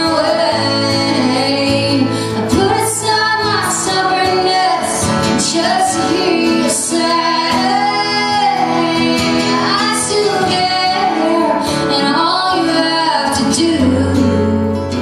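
A woman singing live with acoustic guitar accompaniment, two acoustic guitars playing under the voice.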